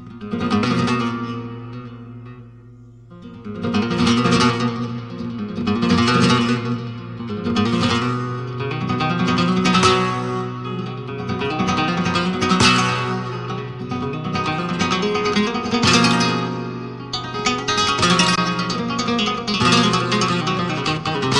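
Flamenco guitar playing tarantos: strummed chords, each left to ring and fade, about every two seconds, after a lull about two seconds in. The chords come more thickly near the end.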